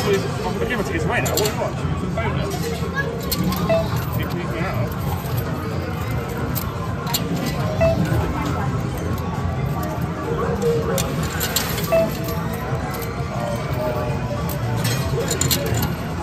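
Amusement arcade din: background voices and machine music, with short clinks of 2p coins dropping and sliding on a coin pusher's playfield.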